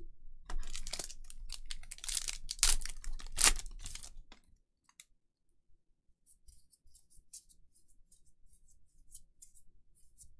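Trading cards being handled and sorted: a few seconds of dense rustling and sliding of cards, with the loudest snaps about two and a half and three and a half seconds in, then only faint occasional ticks as cards are flipped through a stack.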